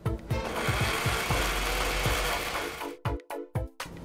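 Countertop glass blender running, blending ice and honey calamansi into a frappe, then stopping about three seconds in. Background music with a steady beat plays underneath.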